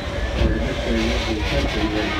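Steam-hauled train running along the track, with a steady rumble of wheels on the rails and the locomotive working.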